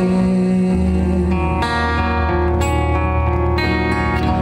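Live acoustic band music between sung lines: acoustic guitar with held sustained notes, and a low bass note comes in about a second in.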